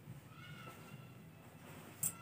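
A faint, drawn-out high animal call lasting under a second, starting shortly after the start, over quiet room tone.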